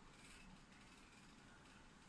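Near silence: the faint, steady whir of the GPD Pocket 2's small cooling fan running under load while it encodes video.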